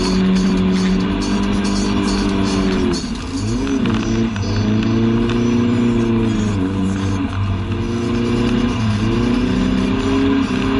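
A 1988 Volvo 740's 2.3-litre engine heard from inside the cabin, pulling at held revs in long steady stretches. About three seconds in the revs drop and swing up and back down quickly before settling again, with shorter breaks near six and a half and nine seconds.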